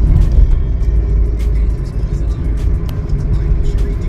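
Cargo van driving, heard from inside the cab: a steady low rumble of engine and road noise with a few faint clicks.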